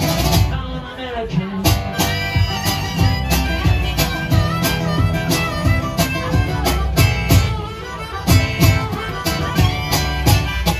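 Acoustic guitar strummed in a steady rhythm with a harmonica playing held notes over it, an instrumental break in a live country song.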